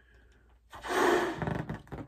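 A balloon being blown up by mouth: after a brief pause, one long breath of air rushes into it, starting about three quarters of a second in and lasting about a second.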